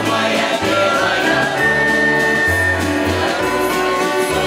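Folk music from a mixed men's and women's choir singing in harmony over accordion and band accompaniment, with held notes over a bass line that moves in steps.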